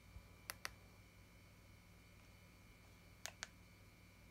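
Key clicks from the back button on a handheld Rii mini wireless keyboard: two quick double clicks, one about half a second in and another about three seconds later, over near silence.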